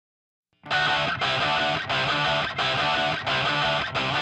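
Electric guitar intro music that starts about half a second in and plays in repeated phrases, each about two-thirds of a second long, with short breaks between them.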